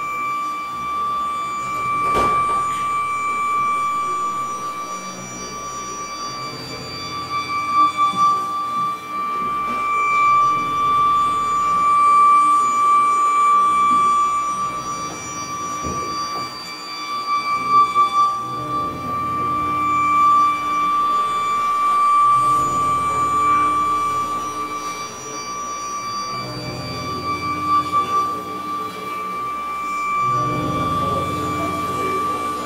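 Live experimental electronic music: a steady high electronic drone tone held unbroken, with fainter overtones above it. Beneath it, low double bass sounds processed live through Kyma swell and fade every few seconds.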